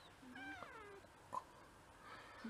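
A cat meowing once, a drawn-out call falling in pitch, followed about a second later by a brief sharp sound.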